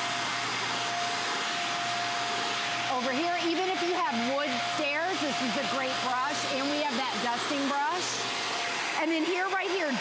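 Hoover Air Lift Lite bagless upright vacuum running steadily with a high motor whine over its suction noise, drawing through the hose and a rubberized pet-hair brush tool on stair carpet.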